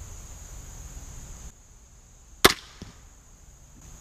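Parker Thunderhawk crossbow fired once: a single sharp crack about two and a half seconds in, followed about a third of a second later by the faint thwack of the bolt striking the target bag 30 yards off. Crickets chirr steadily in the background.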